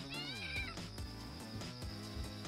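A kitten meows once: a short, high-pitched call about half a second long near the start, over background music.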